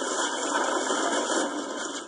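Sound effect of an old chair breaking under a sitter: a steady noisy crash about two seconds long that fades out at the end.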